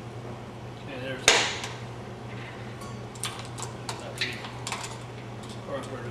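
Steel hand tools, vice grips among them, clanking against a small single-cylinder engine: one sharp loud clank with a short ring about a second in, then a run of lighter metallic clicks and clinks.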